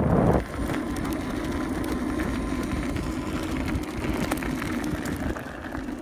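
A small wheel rolling over a bumpy gravel track: steady tyre rumble and crunch with wind on the microphone and scattered small knocks from the bumps, loudest right at the start.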